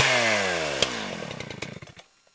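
A small gasoline engine, just revved, winding down: its pitch falls and the firing slows to separate pulses until it stops near the end. A sharp click comes about a second in.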